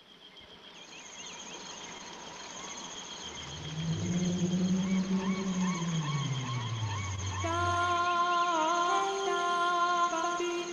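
Lowrey Legend Supreme organ's built-in accompaniment style playing its jungle-at-night introduction: a steady high insect-like chirr and warbling bird-like calls fade in, with a low swell that falls in pitch through the middle. About seven and a half seconds in, held chord tones with a slight waver join.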